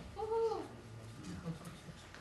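A single short high-pitched vocal sound, about half a second long, that rises and then falls in pitch, near the start.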